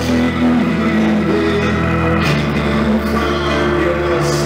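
Live rock band playing a slow song: guitars over a sustained low bass note that shifts to a new note about halfway through.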